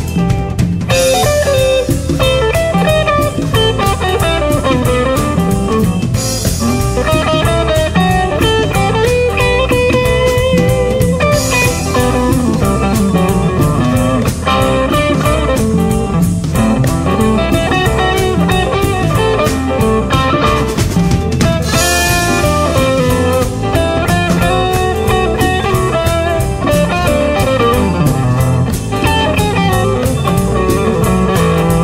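Instrumental break in a blues-rock song: electric guitar played over a drum kit, with cymbal crashes several times.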